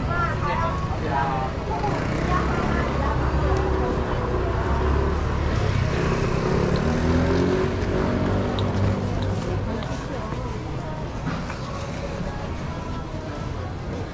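Street noise on a crowded pedestrian street: passers-by talking, and a motor vehicle's engine running close by. The engine gets louder and rises in pitch around the middle.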